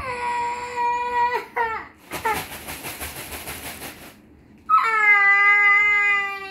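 A young child crying: a long, high, held wail that breaks and falls, then ragged sobbing breaths, then a second long wail.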